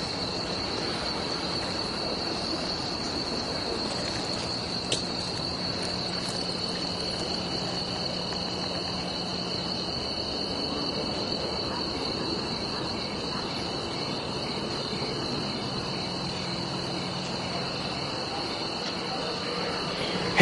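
Steady, unbroken chorus of crickets singing at night, with a faint low hum beneath and one small click about five seconds in.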